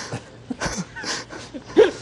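Brief chuckles and short murmured voices from men laughing, in short broken snatches rather than steady talk.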